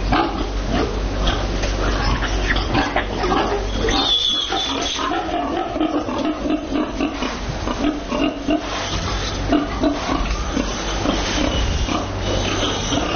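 Anqing Six-White pigs grunting in an even run of short low grunts, about three a second, from about four seconds in, with a brief high squeal near the start of the run. Scattered knocks come in the first few seconds.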